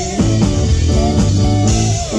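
A live rock band playing loud, with electric guitar, keyboards and a drum kit keeping a steady beat.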